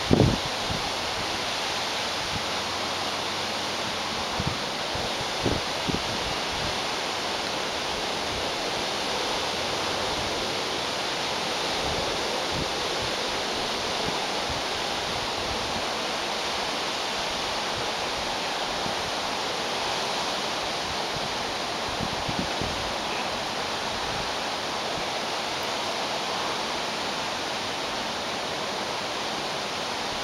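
Steady, even rush of a tall waterfall, a continuous hiss of falling water. A few soft low thumps stand out briefly in the first six seconds and again a little past the middle.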